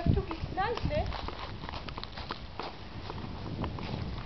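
Footsteps crunching on a gravel path, irregular and several a second, with a person's voice in about the first second.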